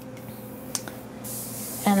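A plastic fondant smoother rubbing over the fondant covering a cake, with one short click and then a soft swish about a second in.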